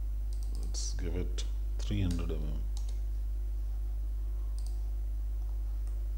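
Clicks of a computer mouse, several in the first couple of seconds and one more later, over a steady low electrical hum.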